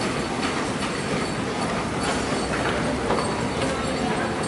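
Hitachi moving walkway running, a steady mechanical rumble with scattered faint clicks.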